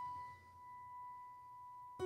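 A single high piano note left ringing, a pure held tone slowly dying away, with nothing else played over it.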